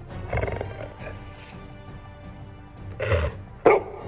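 Golden retriever giving short vocal sounds over background music: a brief one about three seconds in, then a sudden, louder one just before the end.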